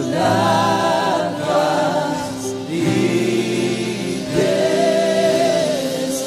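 Live gospel worship music: a worship band with several singers holding long sung notes in drawn-out phrases.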